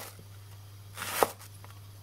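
Wide-bladed kitchen knife slicing down through a raw leek on a cutting board. The crunch builds briefly and ends in a sharp tap of the blade on the board, once about a second in, with the end of a previous cut right at the start.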